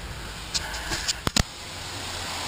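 A few sharp, short clicks or knocks, two of them close together about a second and a half in, over a faint low hum.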